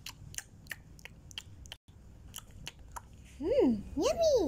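A child making pretend eating noises: light clicks at an uneven pace, then near the end a hummed "mm" that rises and falls in pitch.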